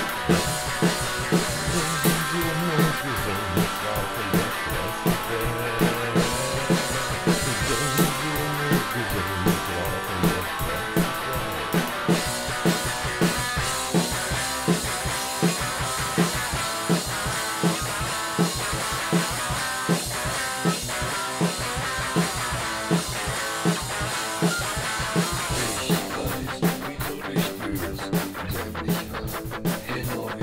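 Instrumental passage of a rock song: guitar over a steady drum beat of about two beats a second. Near the end the music changes to a fast, chopped stutter.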